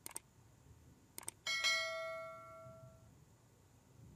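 A few short clicks, then one bell-like chime that rings out and fades over about a second and a half.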